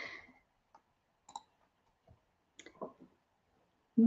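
A few faint, sharp clicks, one a little past a second in and two close together near three seconds, after a short breath at the start.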